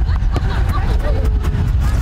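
A football kicked along artificial turf, one or two short sharp knocks, over a steady low rumble and faint distant children's voices.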